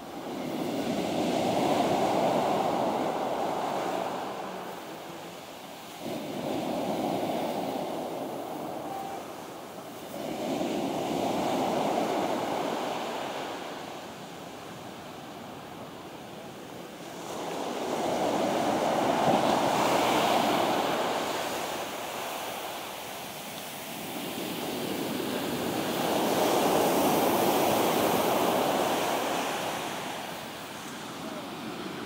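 Rough-sea surf breaking onto a sandy beach, each wave rushing in and washing back. The surges come in five swells, several seconds apart.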